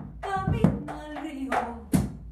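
Cello, piano and hand percussion playing the closing bars of a song: four sharp drum strikes over held notes whose pitch slowly falls, with the loudest strike at the end.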